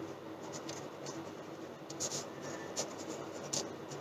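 A pen writing on notebook paper: quiet scratching of short strokes, with a few louder strokes in the second half.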